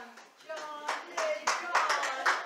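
A few scattered hand claps mixed with people's voices in a room.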